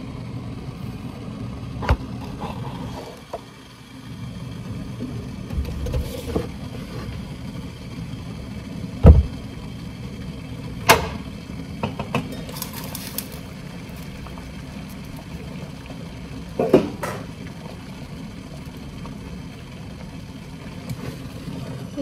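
Kitchen cookware being handled on a stovetop: several separate knocks and clinks, the loudest a dull thump about nine seconds in and a sharp metal clink about two seconds later as a pot lid is handled, over a steady low hum.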